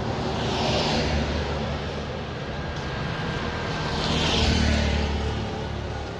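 Street traffic: a steady low engine rumble, with two vehicles passing, one about a second in and another about four to five seconds in.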